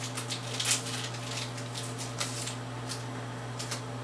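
Foil wrapper of a Pokémon TCG Vivid Voltage booster pack crinkling as it is torn open and the cards slid out, a series of short scratchy rustles, densest in the first second and again twice later on.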